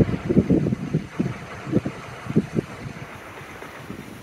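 Wind buffeting an outdoor camera microphone: a steady rushing hiss with irregular low thumps in the first couple of seconds, easing off afterwards.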